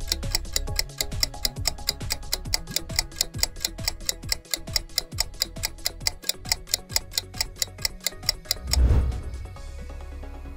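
Quiz countdown timer ticking, with fast even ticks, several a second, over a low background music bed. The ticking stops just before 9 s, followed by a brief, louder low swell as the timer runs out.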